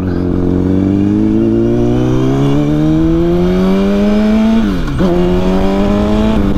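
A 2006 Honda CBR1000RR's inline-four engine, through its aftermarket Jardine exhaust, runs loud while accelerating, its revs climbing steadily. About four and a half seconds in the revs drop sharply and pick up again, then hold fairly steady.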